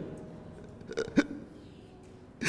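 A quiet pause broken about a second in by a man's short catch of breath: two brief vocal sounds in quick succession.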